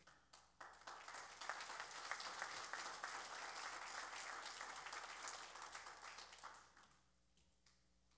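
Congregation applauding, faintly, starting about half a second in and dying away near the end.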